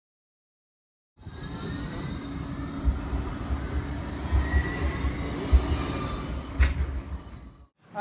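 Light rail tram running: a steady rumble with several low thumps and faint high whining tones, one of them rising slowly. It starts about a second in, has a sharp click late on, and fades out just before the end.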